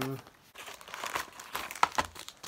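Clear plastic wrapping on a pack of guitar strings crinkling as it is drawn out of its box and handled, with a few sharper crackles near the end.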